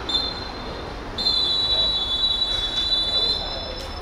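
Referee's whistle: a short blast that ends just after the start, then a long, steady, shrill blast of nearly three seconds.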